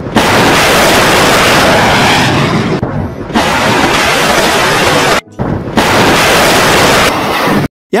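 Anti-ship missile launch: the Exocet MM40 Block 3's solid rocket booster firing off a warship's deck, a loud, steady rushing noise. It comes in three stretches, with brief drops about three and five seconds in.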